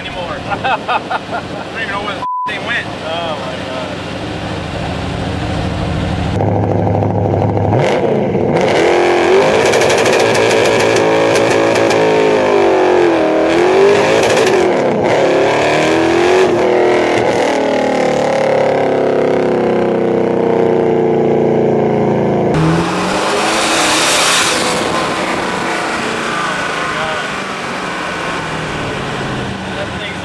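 Twin-turbocharged 572 cubic-inch Chrysler Hemi V8 of a 1968 Dodge Charger being driven hard, revving up and down through several sweeps in pitch after a quieter start. A short loud hiss comes about two-thirds of the way through, then the engine settles to a steadier, lower note.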